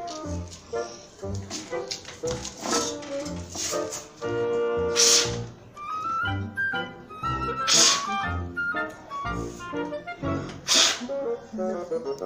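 Background music with a steady beat. Over it come three short, hard puffs of breath about three seconds apart, blowing at a coin on a table to try to push it onto a plate.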